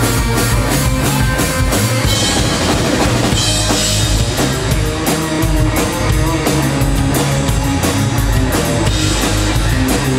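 Live rock band playing loud and steady: drum kit with bass drum and cymbals, electric guitar and bass guitar.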